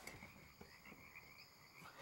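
Near silence but for a faint, steady night chorus of frogs, several high trills held at once.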